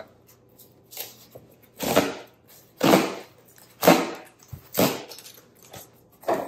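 Cardboard shipping box being opened and the product box worked out of it: a series of about six short scraping rustles, roughly one a second.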